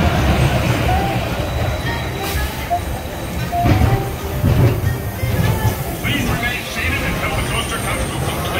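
Roller coaster train rolling slowly along the brake run into the station: a low, steady rumble of wheels on track that swells briefly about four seconds in.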